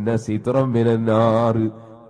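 A man's voice reciting in a sing-song chant, in short phrases, with a pause near the end.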